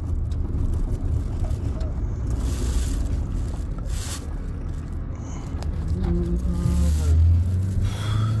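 Steady low road and engine rumble inside the cabin of a moving car, with brief hissy rustles partway through.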